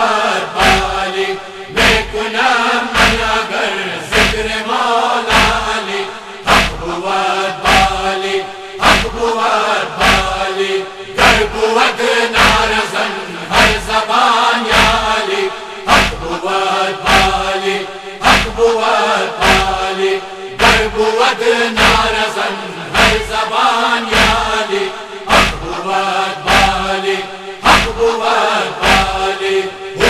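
A group of men chanting a noha in unison over a steady low drone, with rhythmic chest-beating (matam) strikes landing in time, about once a second.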